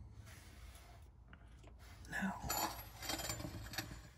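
Faint handling and shuffling noise from a handheld camera being moved around, with a few short knocks and clinks about halfway through, over a low steady hum.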